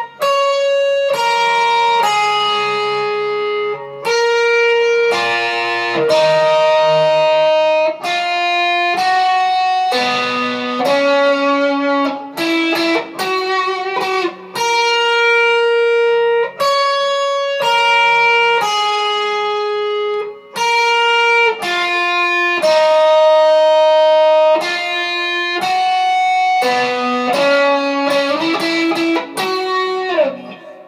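Electric guitar, capoed and played in D, picking the song's single-note intro riff over and over, with notes left ringing into one another.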